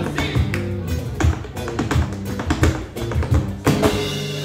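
Flamenco music: acoustic flamenco guitars playing chords under a dancer's zapateado footwork, quick heel and toe strikes on the stage several times a second, with a hard accent near the end.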